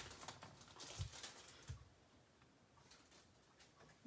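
Faint handling of trading cards and their pack wrapper: a few soft clicks and rustles in the first two seconds, then near silence.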